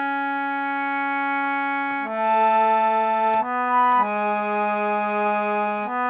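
Harmonium played solo: a slow melody of long, steady held notes, the first held about two seconds before the tune moves through three more notes. The tune is an easy kirtan melody in Kafi raga.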